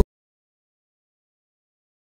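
Complete silence: the soundtrack is empty.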